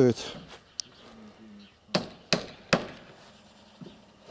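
Hammer blows on the wooden roof ladder: three sharp knocks in quick succession about two seconds in, nails being driven to fix the ladder.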